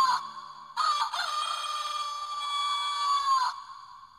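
A rooster crowing: the tail of one crow just as it starts, then a second long crow of almost three seconds that dips slightly in pitch at its end and fades away.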